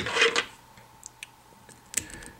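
Handling noise at a fly-tying vise: a short rustle at the start, then a few light ticks and a sharper click near the end as tools and thread are handled.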